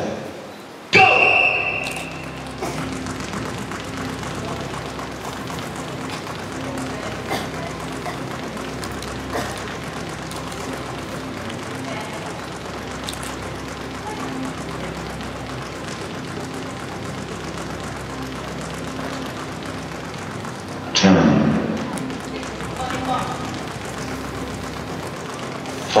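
A loud start signal about a second in, then two double dutch ropes slapping the stage floor in a rapid, steady patter throughout a speed run. A burst of voices breaks in about twenty-one seconds in.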